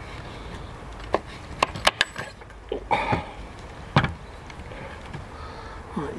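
Kitchen knife cutting through the neck of a tromboncino squash on a wooden chopping board: a few sharp clicks and knocks of blade and squash against the board, the loudest about four seconds in.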